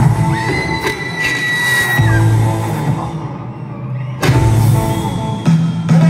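Live rock band playing through an arena PA: held low notes with a high, steady sustained tone over them, then a sudden loud full-band entry about four seconds in.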